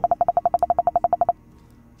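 A rapid train of short electronic beeps on one steady pitch, about fifteen a second, stopping suddenly after about a second and a third. It is the computer beeping for each keystroke as a key on the still-plugged-in keyboard PCB is held down and repeats.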